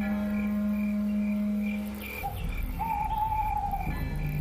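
Background music score of sustained synthesizer notes: a low drone that fades out about two seconds in, with a higher held note coming in near the end.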